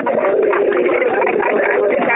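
Many voices sounding at once in a dense, overlapping stream with no pauses, heard through the narrow, tinny sound of a telephone conference line.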